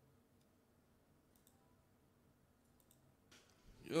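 Quiet room tone with a few faint, sharp clicks scattered through it, then a breath and a man's voice starting just before the end.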